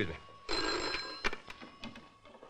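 Desk telephone bell ringing: one burst of ringing about half a second in, followed by a few sharp clicks as the receiver is picked up.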